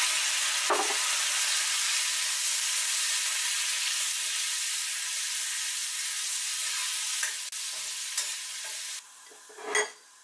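Hot stainless steel skillet sizzling loudly just after deglazing liquid hits the butter, with a metal spoon stirring and clinking against the pan about a second in and again later. The sizzle eases slowly as the liquid cooks off, then drops away abruptly about nine seconds in.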